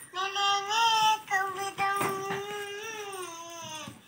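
A child's voice singing a few long held notes, the last one drawn out and falling in pitch near the end.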